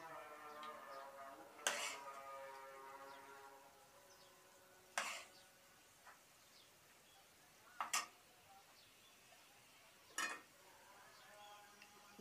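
Metal spoon scooping cooked mince from an aluminium pot, knocking against the pot four times at a few seconds' spacing, with a fading ringing tone in the first few seconds.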